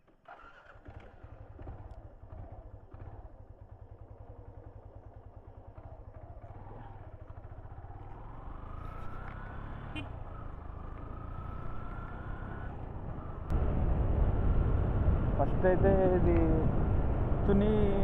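Motorcycle engine starting up and running, then pulling away and gaining speed, with a rising whine as it accelerates. About three-quarters of the way through, the whole sound suddenly gets louder.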